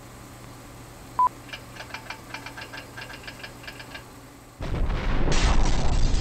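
Trailer sound effects over a faint hum: one short high beep about a second in, then a quick run of short electronic blips, about six a second. Near the end a loud rumbling noise cuts in and continues.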